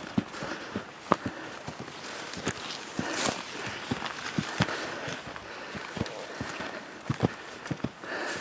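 A person's footsteps while walking, with irregular sharp steps about two a second.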